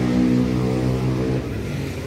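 A nearby motor vehicle's engine running, rising slightly in pitch and then holding steady before it fades out about a second and a half in.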